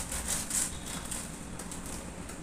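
Rustling of plastic grocery packaging being handled, with a few short rustles in the first second and fainter ones after.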